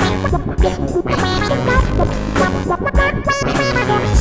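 Akai EWI 4000S electronic wind instrument played live through a synthesizer and effects, giving a melodic synth line over a looped accompaniment with bass and low beats.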